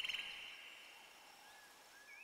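Faint outdoor ambience: a rapid insect-like trill that fades in the first moments, then a few faint bird chirps over a soft hiss.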